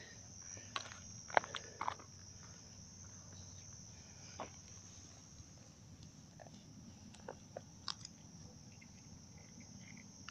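Crickets chirping in a steady high night-time chorus. Over it come a few faint clicks and knocks from handling a pen-type TDS meter close to the microphone, the loudest about a second and a half in.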